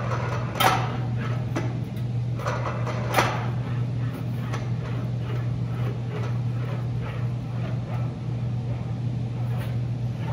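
A thin sheet-steel fender panel being handled and rolled through an English wheel: a few sharp metallic crackles as the panel flexes in the first three seconds, then quieter rolling over a steady low hum.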